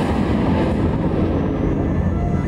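Loud, steady low rumble of a theatrical sound effect accompanying a smoke effect on stage.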